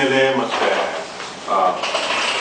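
A man speaking in Kannada, his voice pausing briefly in the middle before he carries on.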